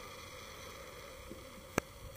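Low, steady background hiss with no engine running, and a single sharp click near the end.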